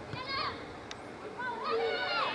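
High-pitched women's voices shouting on a football pitch: a short shout near the start, then louder, longer, wavering shouts from about one and a half seconds in. A single sharp click sounds just before the middle.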